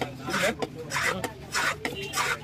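Large fish-cutting knife scraping and cutting at a fish on a wooden chopping block, in repeated rasping strokes, a few each second.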